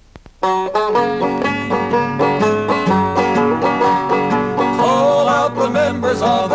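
After a brief gap with a few faint clicks, a banjo and acoustic guitar start about half a second in, playing a brisk plucked instrumental intro to a bawdy folk song.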